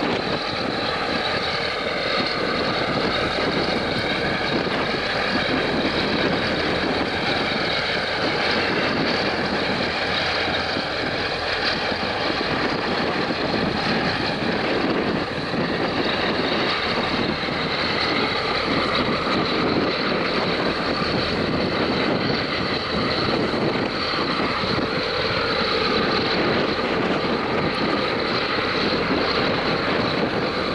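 Steady engine noise from a tugboat working alongside a large container ship, with wind on the microphone.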